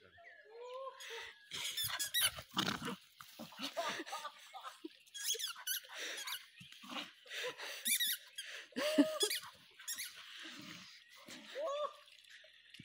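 A squeaky toy ball squeaking again and again, in irregular short squeals, as a dog bites down on it. The loudest squeak comes about nine seconds in.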